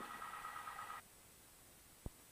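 Faint hiss with a steady high-pitched whine from the aircraft's intercom audio feed, cutting off abruptly to dead silence about a second in. The engine itself is not heard.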